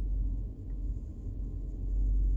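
Steady low rumble inside a vehicle cabin, with no speech over it.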